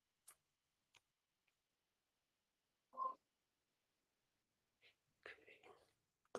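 Near silence: room tone on a video call, with a few faint clicks and brief, quiet voice sounds, one about three seconds in and a cluster near the end.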